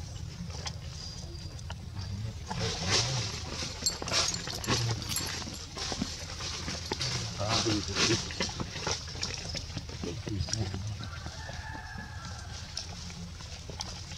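Dry fallen leaves crackling and crunching underfoot, in irregular bursts of rustling that are busiest over the middle of the stretch.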